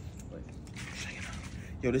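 Packaging being handled during an unboxing: a short rustling scrape with a few faint clicks.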